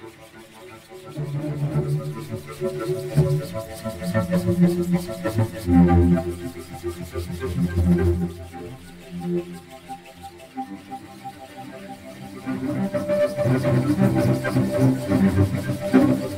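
Sampled solo cello (Cello Untamed library) played with circular bowing: the bow swishes across the strings while low notes swell in and out unevenly as the bow catches the string. It grows quieter around the middle and swells up again near the end.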